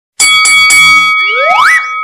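Edited-in sound effect: three quick bright chime strikes whose ringing tones hold on, then a rising glide about a second and a half in.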